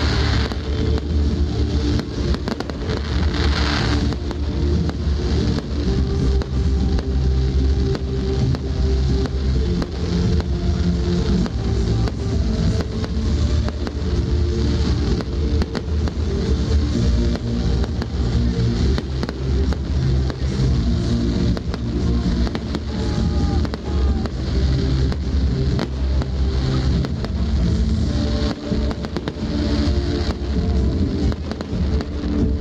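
Fireworks display: a rapid, continuous run of bangs and crackles from bursting aerial shells, mixed with loud music.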